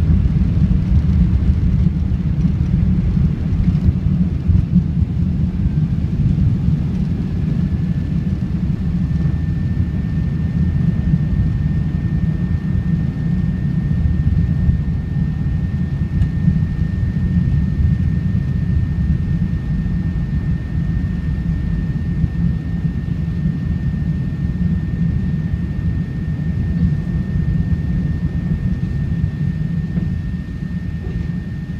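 Cabin noise of an Airbus A380-800 at takeoff thrust, lifting off and climbing out: a loud, steady deep rumble of its four jet engines and the airflow, heard from inside the cabin. A faint steady high whine joins about seven seconds in.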